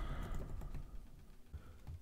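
Faint typing on a computer keyboard: soft, irregular key clicks.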